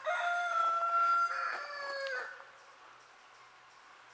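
Rooster crowing: one crow lasting a little over two seconds, its pitch dropping at the end.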